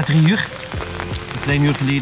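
A man's voice talking in short phrases over background music with a low, thudding beat.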